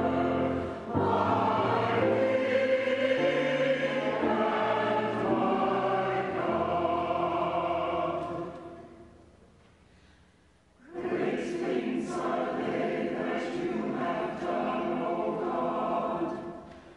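Church choir chanting a psalm verse in parts, with low held keyboard notes beneath, then fading out. After a pause of about two seconds the choir begins the next verse.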